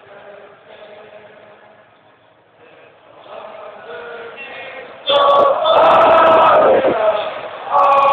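A huge football stadium crowd of about 98,000 fans singing a school song together in unison. The singing is thin for the first few seconds, then suddenly grows much louder and fuller about five seconds in.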